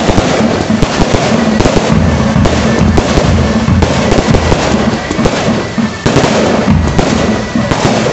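Loud, fast dhol drumming with sharp, dense beats, mixed with the hiss and crackle of the spark fountains.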